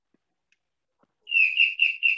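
A bird chirping: a quick run of high, even chirps, about four a second, starting a little over a second in.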